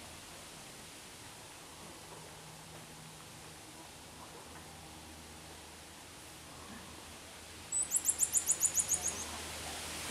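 A common marmoset giving a fast, very high-pitched twittering call: about a dozen short chirps in a second and a half, near the end, over faint background hiss.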